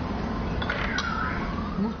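Steady room noise with a metal spoon clinking once against a clay bowl about a second in, followed by a brief falling tone.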